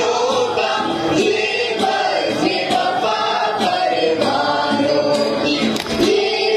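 Many voices singing a song together in chorus.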